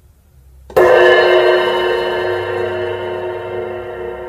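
A cymbal on a drum kit struck once, about three quarters of a second in, ringing on and fading slowly.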